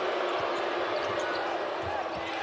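Steady arena crowd noise with the faint thumps of a basketball being dribbled on a hardwood court during live play.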